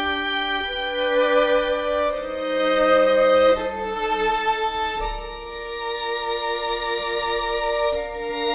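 Several overdubbed violin parts playing slow, sustained chords together, the harmony shifting every second or two, with the notes sliding down about three and a half seconds in.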